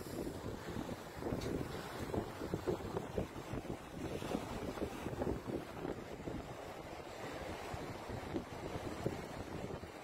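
Wind buffeting a phone microphone, a rough, uneven rumble, over the wash of surf breaking on the beach.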